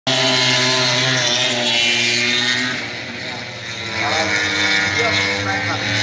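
Racing motorcycle engines running at high revs out on the circuit, a steady note that fades about halfway through and picks up again, under a distant public-address commentator's voice.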